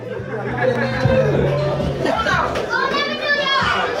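Overlapping voices of several people talking and calling out in a room, with music playing in the background.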